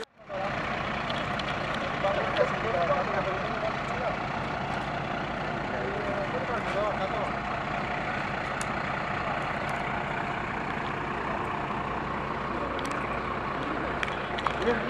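Fire engine's diesel engine running steadily at idle, a continuous low drone, with voices talking faintly over it.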